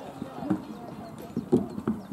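Horse's hoofbeats cantering on a sand arena: a few dull, uneven thuds, the loudest about half a second and a second and a half in, in the strides leading to a take-off over a show jump.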